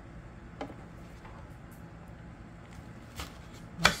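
Quiet handling of a knife and a cut apple-melon on a plastic tray: a few faint light taps, then one sharp click near the end.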